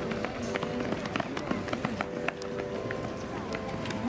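Trackside voices calling out in long, drawn-out notes, over a quick irregular patter of sharp clicks: running footfalls or clapping.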